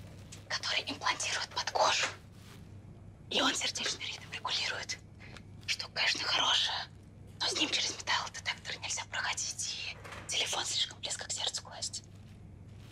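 Whispered speech in several short phrases with pauses between them, over a faint steady low hum.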